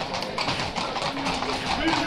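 Shod hooves of a group of ridden Camargue horses clopping on an asphalt street, many overlapping hoofbeats, with crowd voices over them.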